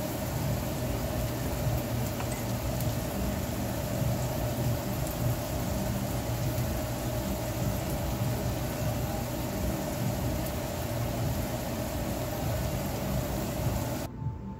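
Diced onion, garlic and pepper frying in oil in a nonstick pan: a steady sizzling hiss with faint crackles over a constant low hum.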